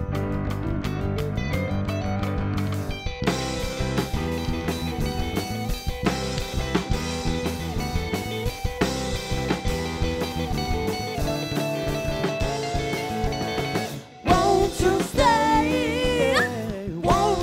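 Live indie-pop band playing, an electric guitar solo over a drum kit, the band coming in fuller about three seconds in. Near the end the music drops out for a moment and a singing voice comes in with a wide vibrato.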